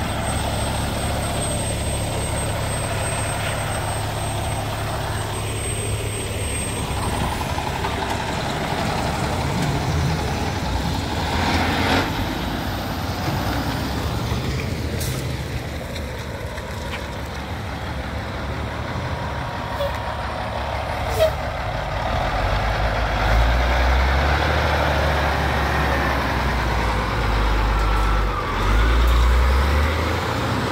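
Heavy diesel trucks going by close at hand, with a steady low engine rumble. From about two-thirds of the way through, a dump truck's diesel engine grows louder and deeper as it comes up and turns past.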